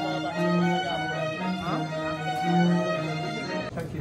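String section of a chamber orchestra playing slow, sustained chords, breaking off suddenly near the end.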